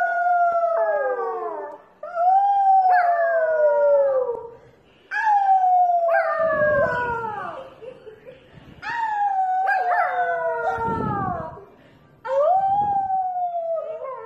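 A puppy howling: about five long drawn-out howls in a row, each sliding down in pitch, with short breaks between them.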